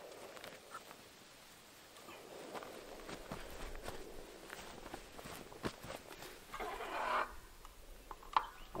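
Faint footsteps through grass and handling noises, with a few sharp clicks along the way and a brief rustle about seven seconds in.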